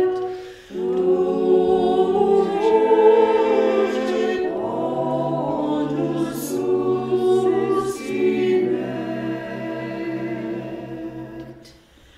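A four-part SATB choir sings a cappella in Latin, holding sustained chords in several lines. There is a brief break between phrases about half a second in, a few sharp 's' consonants in the middle, and the phrase dies away just before the end.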